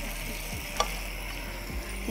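Minced chicken sizzling steadily in a frying pan over high heat as the liquid it has released cooks off, with a single click about a second in.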